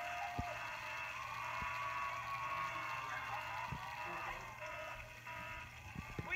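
Studio audience cheering and shouting over a just-finished sliming, heard thin and tinny through a laptop's speakers, a steady crowd din with a few high voices held above it.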